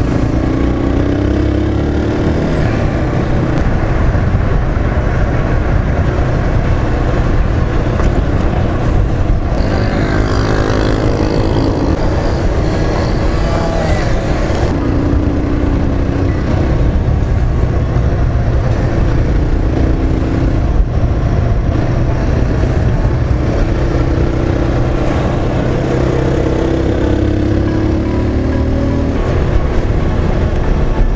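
Motorcycle engine running while being ridden, its pitch climbing and dropping back several times as the rider accelerates and changes gear, under steady wind and road noise.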